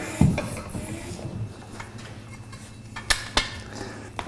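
A floor pump worked briefly to put a little air into a bicycle inner tube, with metallic handling clatter. Near the end come two sharp clicks about a third of a second apart.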